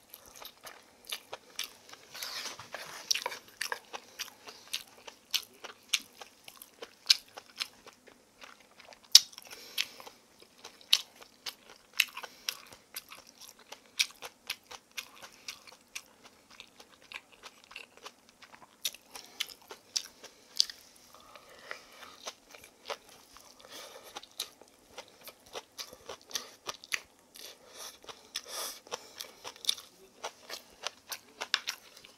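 Close-miked chewing of spoonfuls of namul bibimbap (rice mixed with seasoned vegetables), with many short sharp clicks and wet mouth sounds coming irregularly throughout.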